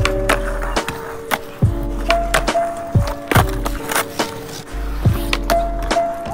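Background music with a steady beat: deep bass notes, kick drums that drop in pitch, sharp clicking percussion and held melody notes.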